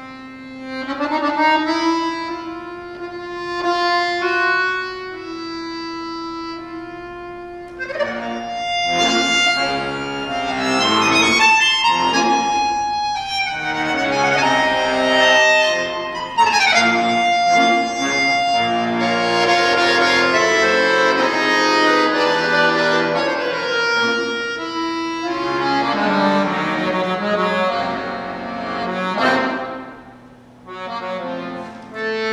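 Bayan (chromatic button accordion) playing solo: slow held chords for about the first eight seconds, then fast, dense, louder passages to near the end.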